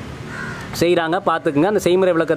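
A man's voice speaking, starting about a second in after a brief pause.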